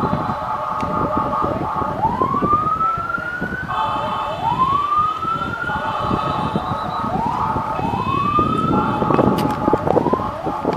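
Fire engine sirens wailing: repeated rising sweeps about every two seconds, each one overlapping or alternating with a steady held tone, over a background of city traffic noise.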